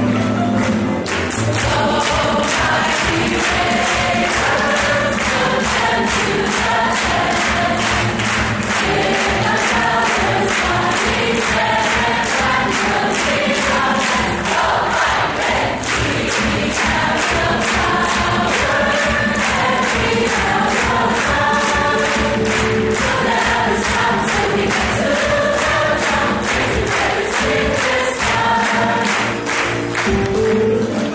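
Large high school choir singing the school fight song, with a steady beat underneath.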